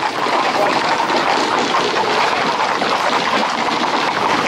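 Many Camargue horses walking close together on a paved road: a dense, continuous clatter of hooves on asphalt.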